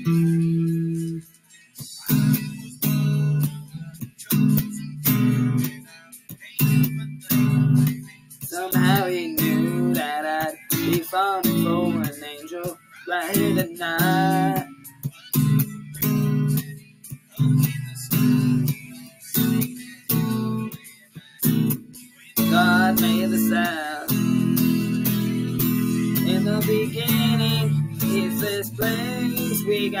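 Electric guitar strumming chords in a steady, stop-start rhythm, with a pitch-bending melody line heard over the chords in places.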